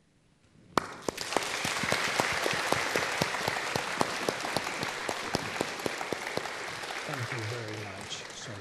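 Audience applause breaks out suddenly about a second in, right after the end of a solo piano piece, and goes on as dense, steady clapping. A man's voice speaks over it near the end.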